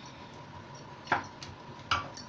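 A metal spoon clinks twice against a glass baking dish, two short sharp knocks a little under a second apart, as it works marinade into chicken drumsticks.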